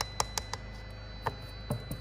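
A few light, sharp clicks and taps from hand handling around the loudspeaker's back panel, three quickly in the first half-second and a few more near the end, over a faint steady electrical hum.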